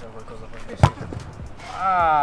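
A football struck once: a single sharp thud about a second in, with a few faint taps after it. Near the end a person's voice calls out with a falling pitch.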